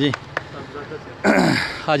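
A man clearing his throat loudly into a handheld microphone: one harsh burst of about half a second, between two short spoken words.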